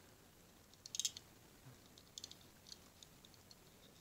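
Faint, scattered clicks of a small die-cast model car being handled in the fingers, a cluster about a second in and a few more later.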